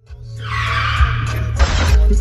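Car tires screeching for about a second, ending in a short, harsher burst, over a heavy low bass.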